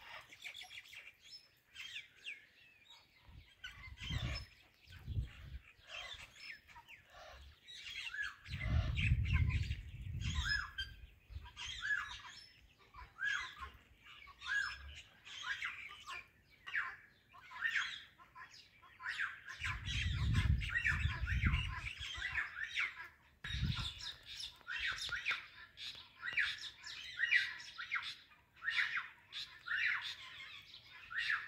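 Indian ringneck parakeets chattering: quick runs of short, high chirping calls, nearly continuous. Low rumbles come through a few times, the longest lasting a couple of seconds about nine and twenty seconds in.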